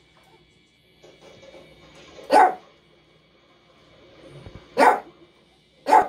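A dog barking: three short, sharp single barks, one about two seconds in and two more near the end about a second apart.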